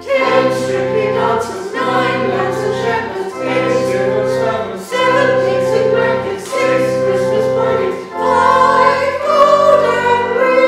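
Church choir singing in held chords, line by line, with a brief break between phrases about every one and a half seconds.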